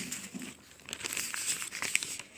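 Paper notebook pages being turned by hand: rustling and crinkling in two spells, a short one at the start and a longer one from about a second in, with a sharp tick near the end.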